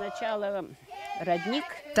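A small group of voices singing an Ingrian folk song, holding some notes steady and sliding between others.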